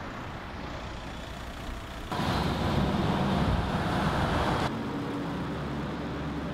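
City street traffic noise: a steady roadway hum with engine rumble. It jumps louder abruptly about two seconds in and drops back shortly before five seconds.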